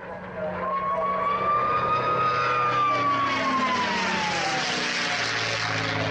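P-51 Mustang in flight with its characteristic whistle. The whistle is a clear high tone that starts about half a second in, rises a little, then slides steadily down in pitch over about three seconds. It sounds over the steady drone of the V-12 engine. The whistle is air resonating in the open wing gun ports as the fighter pulls through a sharp manoeuvre.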